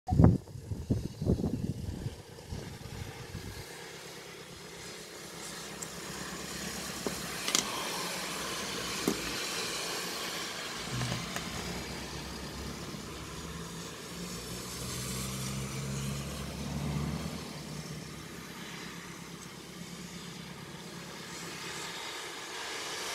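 Cars passing along a wet road, their tyres hissing on the water, the sound swelling and fading as each goes by. A cluster of knocks comes in the first two seconds.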